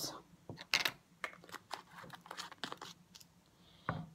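Irregular light clicks and crinkles from vegetables and parchment paper being handled: scattered sharp ticks with no steady rhythm.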